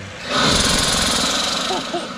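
Two TorqAmp electric turbochargers, plumbed in series, spinning up when switched on: a loud rush of air begins about a third of a second in, then slowly eases off near the end.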